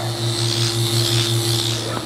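Power-assisted liposuction unit running: a steady electric hum with a fast, even pulsing from the reciprocating cannula drive, over a continuous hiss of suction.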